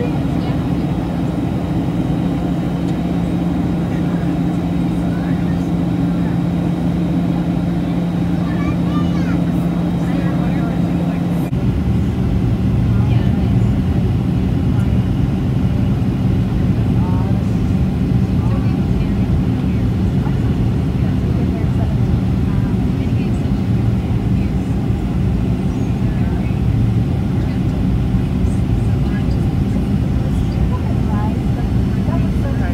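Cabin noise of a Boeing 737-700 with CFM56-7B engines on descent, heard from a window seat over the wing: steady engine and airflow noise with a hum. About a third of the way in the sound changes abruptly to a lower, slightly louder rumble.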